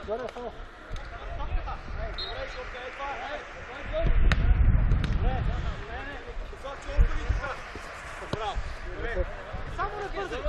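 Football being kicked on artificial turf, with sharp thuds about four seconds in and again about seven seconds in, while players' voices call out across the pitch. A low rumble swells for a second or so around the first kick.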